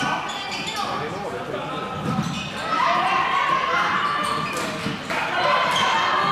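Floorball play echoing in a sports hall: short clicks of plastic sticks and ball, footsteps, and players' raised voices calling out, louder from about three seconds in.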